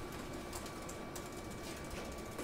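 Quiet room tone with faint, irregular light clicks, like keys being tapped.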